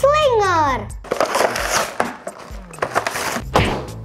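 Toy packaging crackling and rustling as two toy monster trucks are unboxed, with scattered sharp clicks, over light background music. It opens with a child's voice sliding down in pitch for about a second.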